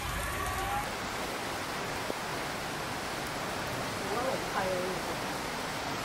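Steady hiss of heavy rain, with a brief voice at the very start and a faint voice about four seconds in.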